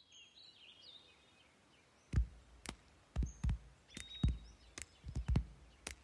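Faint bird chirps, then from about two seconds in a run of about ten sharp hand-percussion strikes at an uneven pace, the tapping of a children's clapping-game song.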